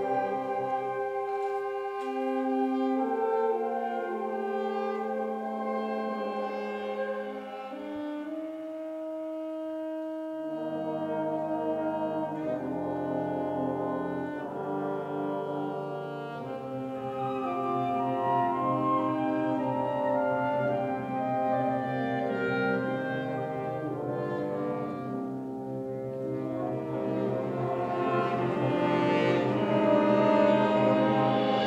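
Symphonic wind band playing a slow passage of sustained chords with the brass prominent. Lower instruments come in about ten seconds in, and the band swells louder near the end.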